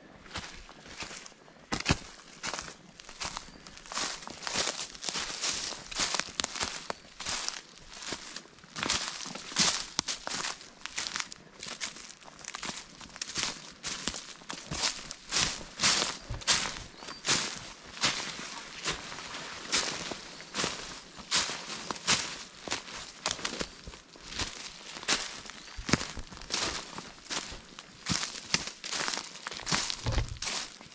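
Footsteps crunching through dry fallen leaves on a forest floor at a steady walking pace.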